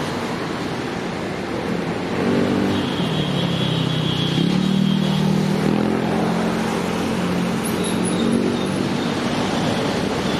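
Road traffic with a motor vehicle's engine running close by from about two seconds in, its pitch dipping and then rising. A brief high whine sounds in the middle.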